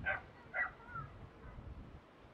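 Two short animal calls about half a second apart, followed by a brief glide in pitch.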